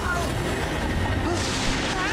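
Animated show's soundtrack: characters straining and grunting over a continuous deep rumble, with a brief rushing noise near the end.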